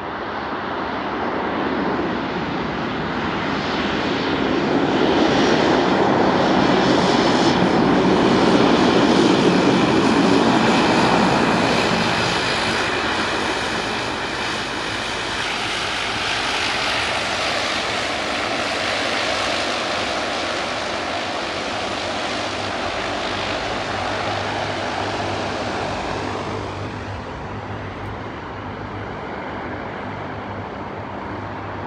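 De Havilland Canada Dash 8-100 twin-turboprop engines and propellers running loud as the aircraft rolls along the runway after landing. The noise swells to a peak with a steady high whine through the first half, then drops to a quieter, even engine sound as it taxis.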